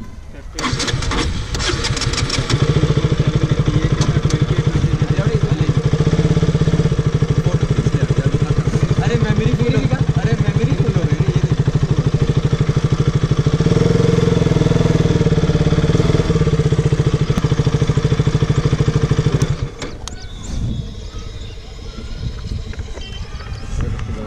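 A KTM single-cylinder motorcycle engine is started, catches a couple of seconds in and runs steadily at idle, its speed rising for a couple of seconds about midway. The engine then shuts off suddenly about four seconds before the end.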